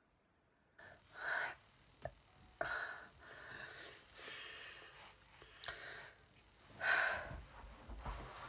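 A person breathing close to the microphone: several audible breaths and sighs, the loudest about a second in and near the end, with a single small click about two seconds in.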